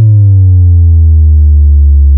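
Loud synthesized bass tone gliding down in pitch and settling into a steady low drone, an electronic pitch-dive effect in a dubstep-style remix.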